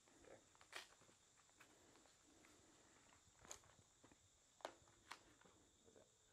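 Near silence with about four faint, short clicks and rustles from hands handling a tourniquet's strap, buckle and windlass.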